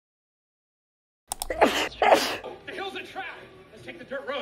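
Silence for over a second, then a person sneezing, a loud two-part burst, followed by quieter voice sounds.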